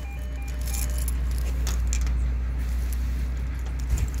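A Vizit door intercom's key reader giving short repeated beeps for about the first second: the key fob has not opened the door. After that, a bunch of key fobs jangles and clicks on a keyring.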